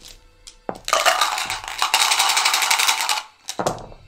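A handful of dice shaken hard in a dice cup, a dense rattle lasting about two seconds, then tipped out into a felt-lined dice tray with a few short clatters near the end.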